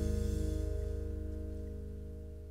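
The band's last held chord, led by guitars, ringing out and fading away steadily at the end of the song.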